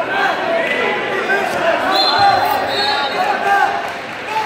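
Crowd chatter in a gymnasium: many overlapping voices of spectators and wrestlers, with a brief high-pitched squeak-like tone about halfway through.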